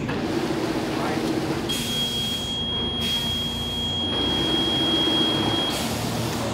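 A bubble-bag sealing machine's buzzer sounding one long steady high beep for about four seconds, starting a couple of seconds in, over the machine's low running hum.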